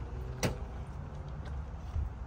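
Outdoor parking-lot ambience: a low steady rumble, with one sharp knock about half a second in.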